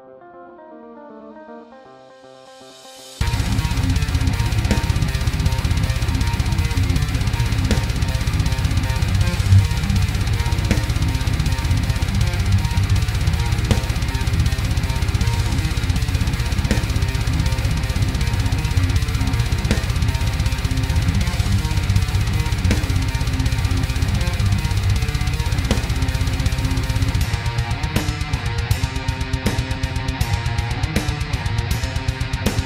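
Heavy metal song demo played back sped up (time-stretched) to 160 bpm: a soft melodic intro, then about three seconds in distorted electric guitars and a drum kit come in loud and stay dense, thinning somewhat near the end.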